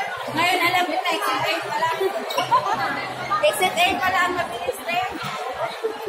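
Several people talking at once in a large indoor hall: overlapping conversational chatter with no single clear voice.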